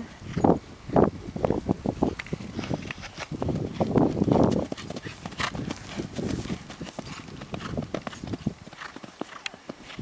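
Hoofbeats of a barefoot Appaloosa–Thoroughbred cross mare cantering under a rider on dry dirt ground: a steady run of quick, uneven thuds.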